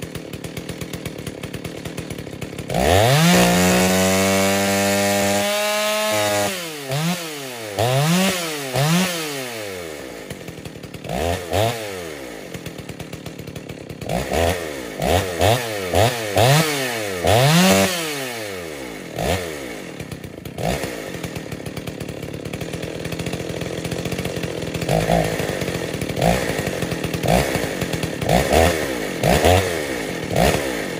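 Ported Dolmar 116si two-stroke chainsaw on a 25-inch bar, cutting through a large log at full throttle. About three seconds in it gets much louder, and its engine pitch swings up and down roughly once a second through the middle of the cut. Near the end it runs steadier, with short surges about once a second.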